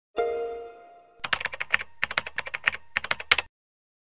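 One musical note rings out and fades, then a rapid run of keyboard-typing clicks lasts about two seconds and stops just before the end.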